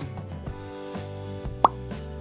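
Background music with steady held notes, and a single short rising 'bloop' sound effect near the end: a slide-change cue as the next picture card comes up.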